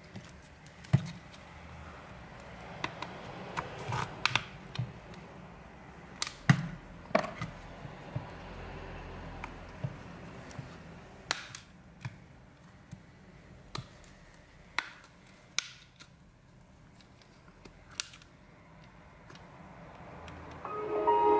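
Scattered sharp plastic clicks and taps, about a dozen at irregular intervals, as a smartphone's plastic frame and clips are worked apart by hand.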